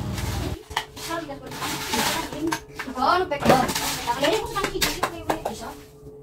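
Glassware and utensils clinking in short sharp clicks while people talk in the background.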